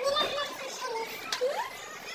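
Background chatter of high-pitched voices, with one sharp click a little past the middle.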